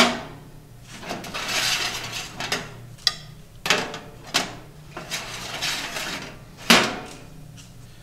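Wire racks of a countertop toaster oven clinking and scraping as they are handled and loaded. There are a few metallic clicks and two longer scrapes, with one sharp knock near the end.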